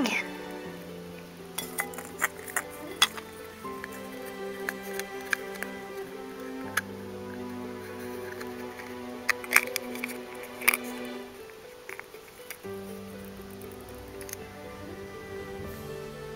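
Background music, over scattered sharp plastic clicks and clinks as clear plastic figure base and dome pieces are handled and fitted together. There is a cluster of clicks in the first few seconds and two louder ones a little past the middle.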